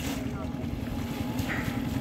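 Boat engine running steadily, a low even hum carried across the water.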